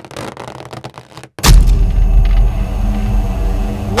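Cartoon sound effect of a magical power surge: a sudden deep boom about a second and a half in, settling into a sustained low rumbling hum. It comes after about a second of quieter noise.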